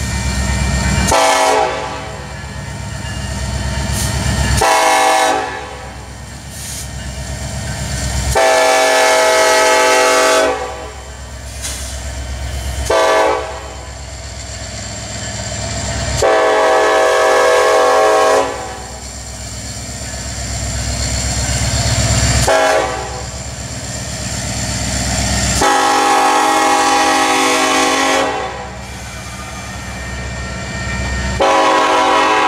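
Diesel freight locomotive horn sounding a series of blasts for a grade crossing, long ones of two to three seconds with short ones between. A steady low rumble from the passing train runs underneath.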